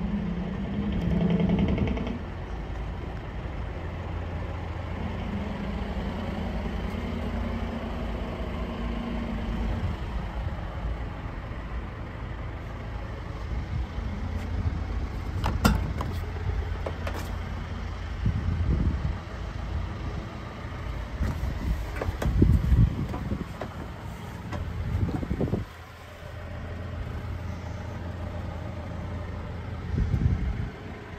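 A John Deere 6615 tractor's diesel engine idling steadily, with a few sharp clicks and louder knocks in the second half.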